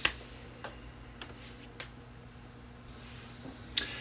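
A few faint clicks at a laptop, spaced roughly half a second apart in the first couple of seconds, over a low steady hum.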